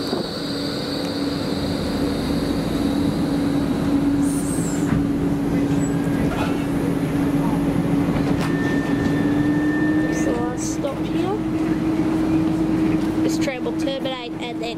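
Bombardier E-class tram rolling slowly past close by and coming to a stop, with a steady electrical hum that rises slightly in pitch near the end. Just before the end, clicks and voices come as its doors open and passengers step off.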